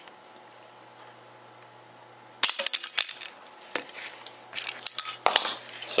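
Wooden snap mouse trap with a large plastic trigger paddle springing shut about two and a half seconds in: one sharp snap followed by a quick rattle of clicks. Scattered clicks and knocks from the sprung trap being handled follow near the end.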